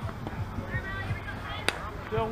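Faint voices of players chattering across a softball field, with one sharp crack near the end as the pitch arrives at the plate.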